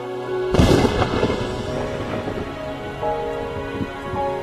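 A single clap of thunder about half a second in, the loudest sound here, rumbling away over the next second or so, over falling rain and a sustained film score with held notes.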